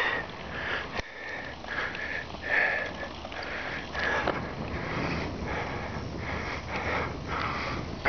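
A cyclist's hard breathing close to the microphone while pedalling, short breaths about once a second, over a steady low rumble of tyres and wind.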